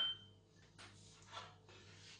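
A metal spoon clinks against a bowl, a single high ring that fades within about half a second, followed by faint handling noises.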